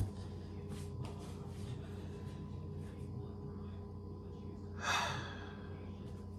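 A man's heavy breath out, like a sigh, about five seconds in, over a steady low hum with a few faint clicks.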